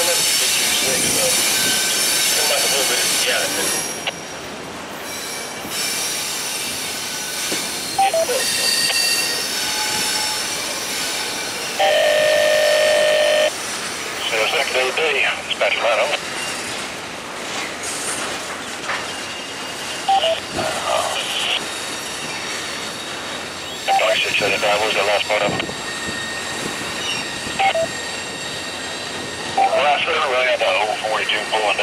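Intermodal freight train's cars rolling past on a curve, steel wheels squealing with thin, steady high tones over the rumble of the cars. A loud, steady tone lasts about a second and a half near the middle.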